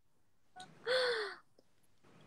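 A young woman's short, breathy vocal sound about a second in, falling in pitch, like a gasp or a breathy half-laugh.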